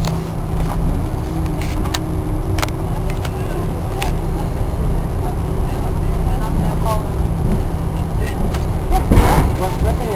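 Cabin noise of an Airbus A340-300 moving on the ground: a steady low rumble from its four engines and wheels, with scattered short knocks and rattles and a louder rushing burst near the end.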